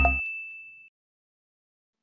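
A single high, bright ding ringing out and fading away within the first second, as the tail of an electronic intro music sting dies out.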